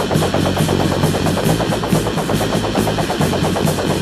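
Early-1980s UK82 hardcore punk recording, fast and loud, with a dense wash of rapid cymbal and drum strokes over the band.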